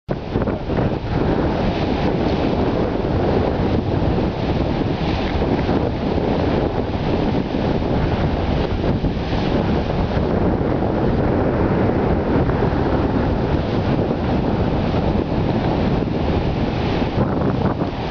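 Heavy ocean surf breaking continuously, mixed with strong wind buffeting the microphone: a loud, steady wash of noise with no separate events.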